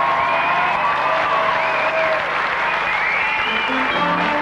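Audience applauding, with a few high calls gliding up and down above the clapping.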